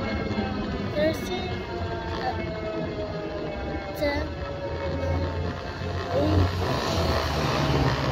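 Brushless 750 W rear hub motor of a RAEV Bullet GT e-bike whining under heavy load as it climbs a steep hill with two riders on throttle only. Its pitch slowly falls as the bike loses speed, with wind and tyre rumble underneath.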